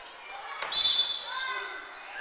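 A single sharp smack of a hand striking a large inflated Kin-ball, about two-thirds of a second in, followed by a brief high ringing tone. Players' voices call out around it in a large, echoing gym.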